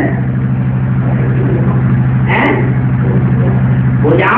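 A steady, loud low hum continues without a break, with a brief voice sound about two and a half seconds in.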